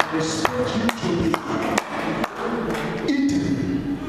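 A man's voice amplified through a church PA, set to a beat of six sharp taps about half a second apart that stop a little over two seconds in.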